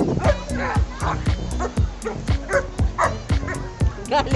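A dog yipping and whining in short high-pitched calls, several times, over background music with a fast steady beat.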